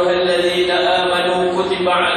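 A man's voice chanting Quranic recitation in a slow melodic style, holding long steady notes.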